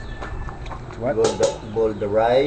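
A person's voice speaking in short phrases from about a second in, over a steady low background hum.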